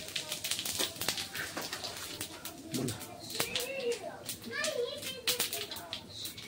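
Cumin seeds sizzling and crackling in hot oil in a kadhai, with many quick, sharp pops throughout.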